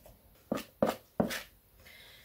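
Three sharp knocks of a spoon against a plastic mixing bowl, about a third of a second apart, as the bowl of cake batter is handled.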